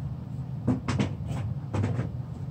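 Hands handling a clear plastic storage box and the feathers inside it. A few short knocks and rustles start under a second in, over a steady low hum.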